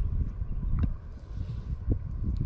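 Wind buffeting a body-worn action camera's microphone: an uneven low rumble, with a few faint clicks.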